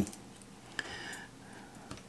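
Faint clicks and rustling from hands pushing a soft-plastic swimbait trailer onto a chatterbait's jig hook and through its silicone skirt.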